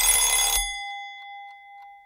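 Countdown timer's time-up sound effect: a bell strikes once as the count reaches zero, and its ringing tone fades away over about two seconds.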